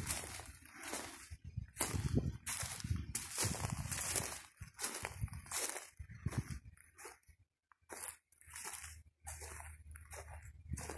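Footsteps swishing and crunching through long, thick grass, about one or two steps a second, uneven, with a brief pause about three quarters of the way through.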